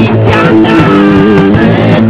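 Rock band playing live and loud, with guitar to the fore over bass and drums.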